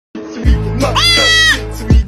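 A goat bleating once, a high call about half a second long, over music with a deep bass and heavy kick drum.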